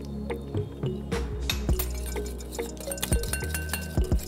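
Wire whisk clinking and scraping against a ceramic bowl while stirring a creamy dressing, over steady background music.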